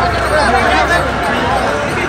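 Hubbub of a large crowd: many voices talking at once in a steady babble, with a low rumble underneath.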